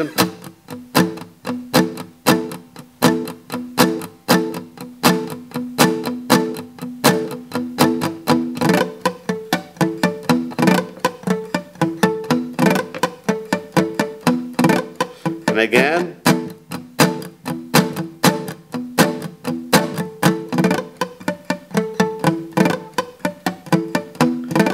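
Steel-string acoustic guitar strummed in a steady rhythm of quick, sharp strums, moving through chord changes.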